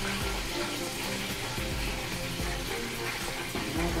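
Waffle batter poured onto a hot, greased waffle iron, sizzling steadily.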